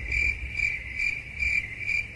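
Cricket chirping, a high trill pulsing a few times a second, used as an edited-in sound effect for an awkward silence.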